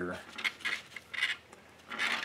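Handling noise from a small fan motor being taken apart with gloved hands: a few short clinks and scrapes of the wound stator against its metal housing as it is worked loose.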